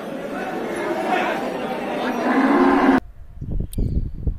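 Water buffalo lowing, one long low call near the end, over the chatter of a crowded livestock market. The sound cuts off abruptly about three seconds in, leaving a quieter background with low handling thumps.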